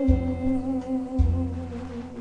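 A voice humming one long held note with a slight waver over a pop song backing track, with low bass notes underneath; the hummed note fades out near the end.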